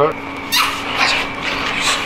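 Dogs making sounds during a tug on a chew stick, with a few short, noisy bursts about half a second in and again near the end.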